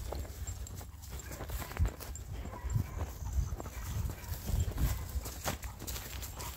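Footsteps walking over rough ground, irregular low thuds with a few sharper clicks.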